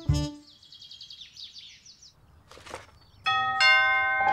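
A tune's last note ends, then a bird chirps in a rapid high twittering run for about a second and a half. A short swish follows, and a held musical chord starts about three seconds in.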